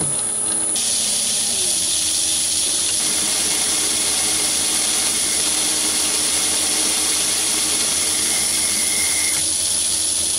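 Myford lathe starting up and running while a 10 mm twist drill is fed from the tailstock into the spinning workpiece, drilling to depth: a steady hiss that comes in suddenly about a second in.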